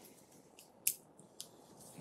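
Quiet room tone with a few short, sharp clicks or scratches, the loudest just under a second in and a smaller one about half a second later.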